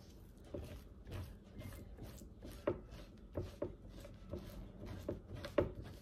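Metal spoon scraping raw mackerel flesh off the skin on a plastic cutting board: a run of short, irregular scrapes and taps, a couple of them sharper than the rest.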